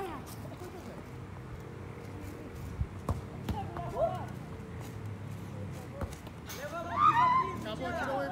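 Players shouting during a football match, with a few sharp knocks of the ball being kicked about three seconds in. The loudest sound is a long shout near the end.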